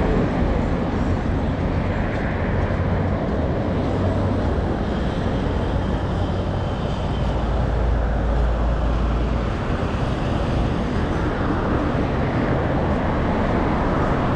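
Road traffic on a busy roadside: a steady rumble of car engines and tyres passing close by, with a deeper low rumble swelling from about seven seconds in for a couple of seconds as a vehicle goes past.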